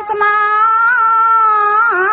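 A single voice chanting a long drawn-out melodic line in Buddhist recitation style, holding one high note with a slight waver, broken briefly just after the start.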